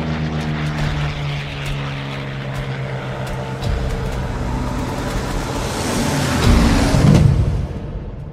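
P-51 Mustang's Merlin V-12 piston engine droning at a steady pitch, then swelling louder with more rushing noise over the last couple of seconds before cutting off abruptly near the end.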